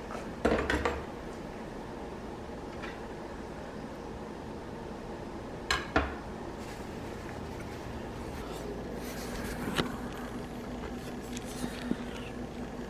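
Metal kitchen tongs and a knife knocking and clattering on a wooden cutting board: a short clatter just after the start, two knocks around the middle, another later, and a few more near the end, over a steady low room hum.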